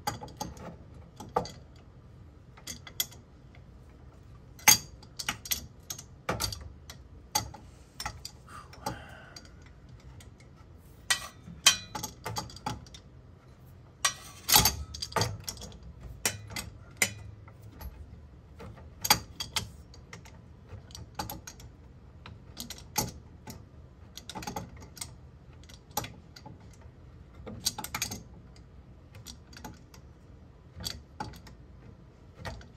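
Two steel combination wrenches clinking against each other and against a fitting as it is turned a little at a time. The sound is an irregular run of sharp metallic clicks and taps.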